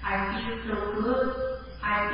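A voice going on in a steady chant-like cadence, not in English, over a steady low hum in the recording.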